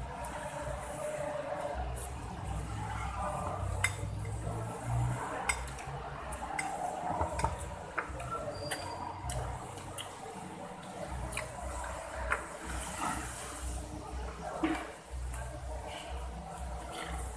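Close-up eating sounds: instant fried noodles being slurped and chewed, with scattered sharp clicks and clinks from the plate and utensils.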